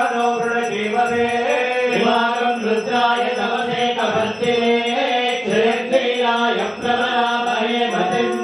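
Sanskrit Vedic mantras chanted in a steady, even rhythm over a sustained held note.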